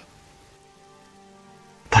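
Quiet background music with long held tones over a soft, even hiss. A man's loud exclamation, "Boah", cuts in right at the end.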